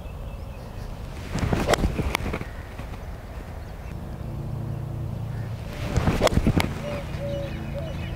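Golf club striking a ball outdoors: clusters of sharp clicks about a second and a half in and again about six seconds in, over steady outdoor background noise. A low steady hum comes in about halfway.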